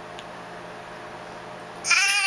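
A quiet stretch, then near the end a baby starts to cry with a loud, high-pitched wail.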